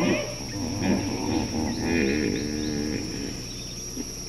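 Dromedary camels calling in low, wavering moans: one about a second in and a longer one from about two to three seconds in. A faint steady high-pitched whine runs behind them.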